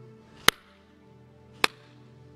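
Soft sustained background music, held keyboard or organ chords, with two sharp percussive hits about a second apart.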